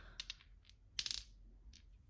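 Small glass cosmetic bottles clinking as they are handled and set down among hard makeup compacts: a few light clicks, with the loudest cluster of clinks about a second in.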